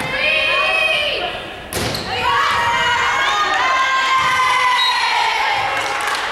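Girls' voices shouting and cheering over a volleyball rally, with one sharp smack of the ball about two seconds in. After it, the shouts turn into long, held cheers.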